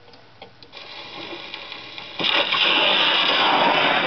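EMG horn gramophone's needle set down on a shellac 78 record: a few light clicks, then the hiss of the run-in groove, jumping sharply about two seconds in to loud surface noise through the horn as the record starts playing.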